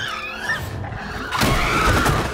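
A monster's screech sound effect over music: a wavering shriek in the first half second, then a louder, noisier screech near the end.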